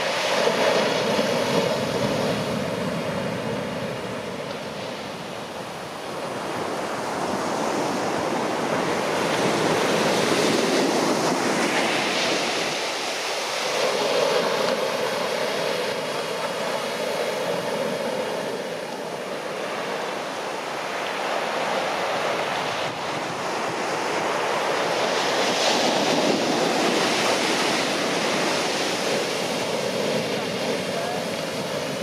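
Heavy shore-break waves crashing and washing up the beach, a continuous rushing roar that swells and eases several times as sets break.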